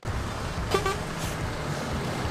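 Articulated lorry with a loader crane driving past, a steady engine and tyre rumble, with one short horn toot just under a second in.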